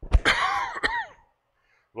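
A man coughs into his hand, clearing his throat: two harsh coughs, the second just under a second after the first, over in about a second.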